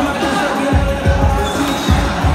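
Loud music with a beat of deep bass-drum hits that drop in pitch, with voices and crowd chatter mixed in.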